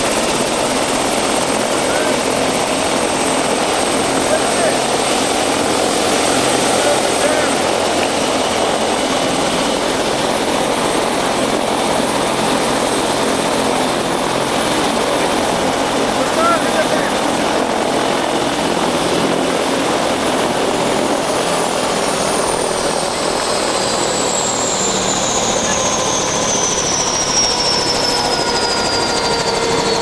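Helicopter running on the ground close by, a steady rotor and engine noise with a high turbine whine; about two-thirds of the way in the whine starts falling steadily in pitch as the engine winds down.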